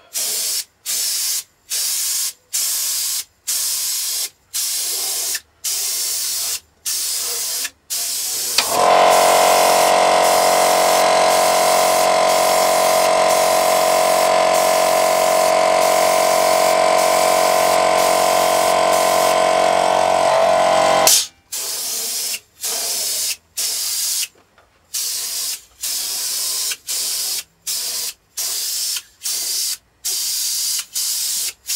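Airbrush spraying thinned clear coat in short bursts of hiss, about one a second. From about nine seconds in, a small motor hums steadily and loudly under the spraying, then cuts off suddenly about twelve seconds later.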